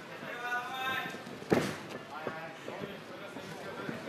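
A voice shouting from ringside over the hall's background noise, then a sharp smack of a blow landing about one and a half seconds in, with a softer knock shortly after.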